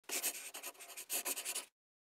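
Short intro sound effect: a dry, scratchy rustle like a pen scratching on paper, in two quick runs, cut off cleanly after about a second and a half.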